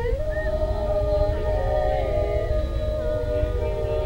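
Women's voices singing a cappella in close harmony, holding long notes that shift together from chord to chord. A steady low rumble runs underneath.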